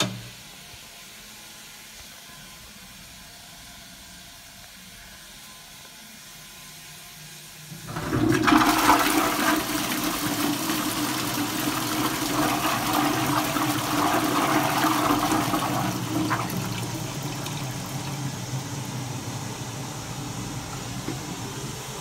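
1980s Armitage Shanks toilet with a Crees flush, flushing. A short knock comes at the very start as the seat is raised, then it is quiet for about eight seconds until the water bursts in loudly and swirls round the bowl with a steady low tone beneath it. The rush eases off in the last few seconds but is still running at the end.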